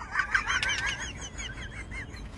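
Small birds chirping and twittering: many short, quick rising-and-falling chirps, several overlapping at different pitches.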